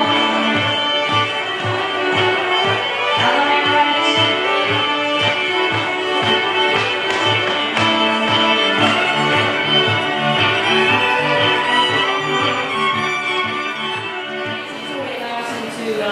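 Amplified 5-string electric fiddle playing a fiddle tune over layered parts recorded on a looping machine, with a steady low pulse of about four beats a second under the melody.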